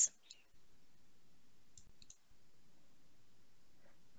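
Low, steady room tone with a few faint, short clicks about two seconds in.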